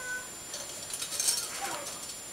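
A few faint crinkles and crackles from about a second in: a small gift bag of cookies being handled close to the microphone.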